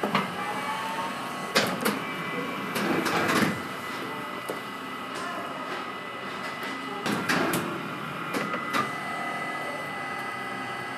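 Baumkuchen oven with its rotating spit running with a steady mechanical hum. Scrapes and knocks of a spatula against the batter tray and the turning cake come in two bunches, one in the first half and another late.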